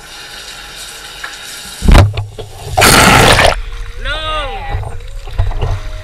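A bathroom sink tap running steadily. About two seconds in comes a loud thump, then a second-long loud rush of noise, followed by drawn-out voices rising and falling in pitch.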